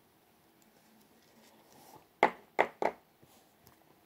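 A trading card being slid into a clear plastic card holder: a soft rustle of card and plastic, then three sharp plastic clicks in quick succession as the holder is handled and closed.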